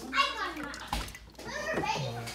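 Battery-powered turbo transfer pump running, with aquarium water pouring through it, while a child's voice talks over it.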